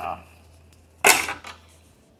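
A single sharp plastic snap about a second in, as the removable extension table is pulled off a Brother 1034D serger, over a faint low hum.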